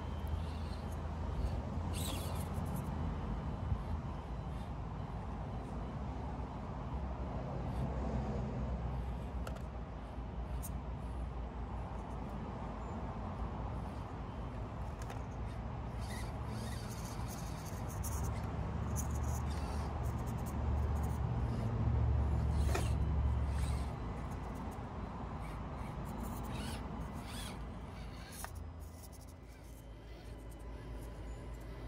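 Axial SCX24 micro RC rock crawler's small electric motor and gears running as it crawls over rocks, with a few sharp clicks of the truck against stone. A low rumble runs underneath and grows louder for a few seconds past the middle.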